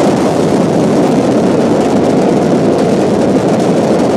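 Space Shuttle Discovery's solid rocket boosters and main engines firing during ascent: a loud, steady, deep rumble of rocket noise with no break.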